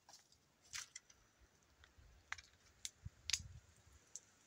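Faint clicks and scrapes of a small measure and container being handled while loading a muzzleloading shotgun: a handful of short sounds, the loudest, with a dull knock, about three seconds in.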